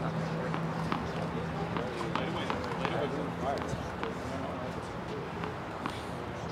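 Outdoor tennis court ambience: indistinct distant voices with scattered sharp taps, the kind made by tennis balls bouncing and being hit. A steady low hum runs under the first half and fades out a little over halfway through.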